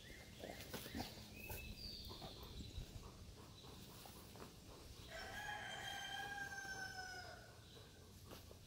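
Faint rustling of fabric as hunting jackets are handled, then, about five seconds in, a distant animal call held for about two seconds, its pitch falling slightly.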